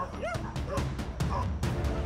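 Dogs giving a few short, rising yelps and barks at a small monitor lizard, over background music.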